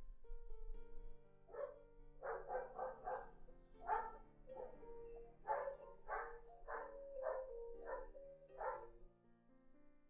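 A dog barking about a dozen times in quick, uneven bursts over sustained background music, with the barks stopping near the end.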